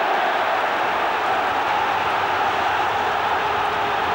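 Large football crowd on packed terraces: a steady wall of massed voices that holds without let-up.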